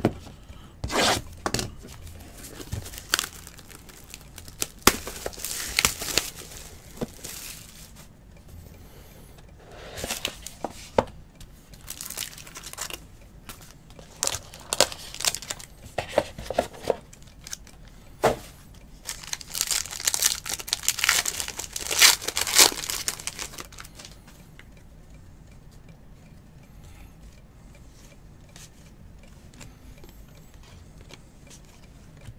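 Trading card packs torn open by hand, their wrappers crinkling, with the cards inside rustling as they are handled. The rustling comes in irregular bursts, busiest about twenty seconds in, and dies away for the last few seconds.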